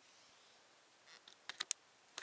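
A few sharp clicks about one and a half seconds in, after a near-quiet start: the plug of a thick 13-pin synth cable being pushed into the socket of a Roland GK-2 guitar synthesizer pickup.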